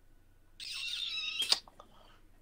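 A high, wavering squeak lasting about a second, cut off by a sharp click, then a few faint clicks.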